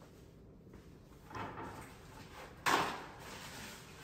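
A soft rustle a little over a second in, then one sudden short scraping clatter near the three-second mark as something is handled at a kitchen counter.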